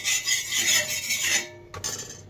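Hand rubbing oil across the surface of an iron tawa in quick back-and-forth strokes, giving a rhythmic rasping scrape that stops about a second and a half in.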